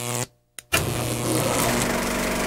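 A steady mechanical hum breaks off into a brief dead silence. About 0.7 s in, a loud, even, engine-like noise with a low hum starts abruptly and runs on steadily.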